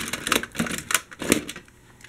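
Toy trams and buses clattering against each other as a hand rummages through a box full of them: a quick run of sharp clicks and knocks that dies down near the end.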